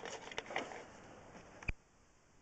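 Faint handling noise with a few soft clicks, then one sharp click near the end, after which the sound cuts out to near silence.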